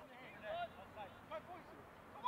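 Faint, distant voices calling and talking out on the football pitch.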